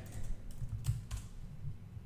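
Typing on a computer keyboard: a quick run of faint key clicks.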